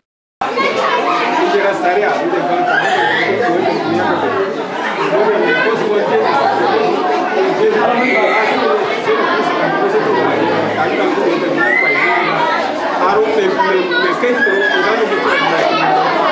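Several people praying aloud at the same time, their voices overlapping in a continuous murmur of speech. The sound cuts out briefly at the very start.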